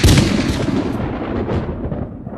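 A blast sound effect, gunshot-like, closing the track: one sharp hit right at the start, then a long rumbling tail that slowly fades.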